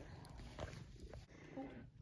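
Near silence: quiet room tone, with a faint, short pitched sound about one and a half seconds in.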